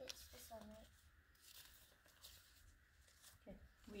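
Near silence, with a faint rustle of a paper fortune slip being pulled from the board and handled, and faint low voices.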